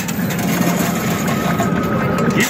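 Steady arcade din with many small, quick clicks of coins clinking onto the metal pusher bed of a rapid-fire coin pusher machine, over a faint steady tone.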